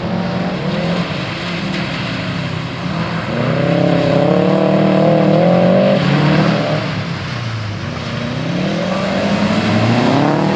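Subaru Impreza WRX's turbocharged flat-four engine revving as the car slides sideways on a wet skidpan. The engine note wavers, climbs and holds for a couple of seconds in the middle, drops, then rises again near the end, over the steady hiss of tyres and spray on the wet surface.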